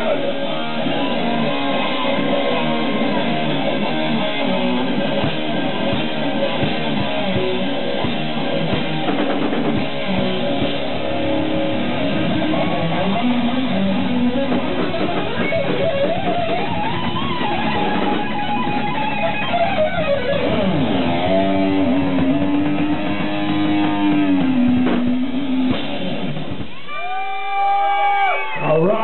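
Live heavy metal band playing with loud electric guitar. From about the middle the playing turns into sliding and long held notes, and the music stops a second or two before the end.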